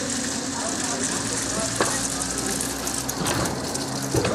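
Steady mechanical hum under a crackling hiss, from a trailer-mounted fairground ride folding its panels shut.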